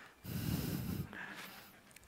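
A short, breathy nasal exhale, a quiet chuckle, lasting under a second, with a fainter breath trailing after it.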